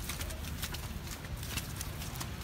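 Footsteps crunching on slushy, icy pavement, several steps a second, over a low rumble.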